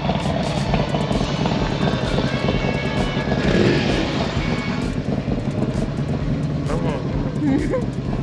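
Several large touring motorcycles riding past one after another, their engines running with a continuous low rumble.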